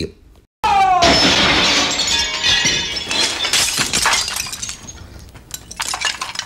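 A window pane shattering as a man crashes through it, starting about half a second in with a short falling yell, then a loud, drawn-out smash of breaking glass that tails off into scattered clinks of falling shards.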